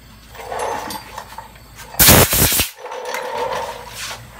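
Hand sanding strokes on body filler: a sanding block rasping back and forth along the car door's edge. About two seconds in comes a loud, short rush of noise, the loudest sound here.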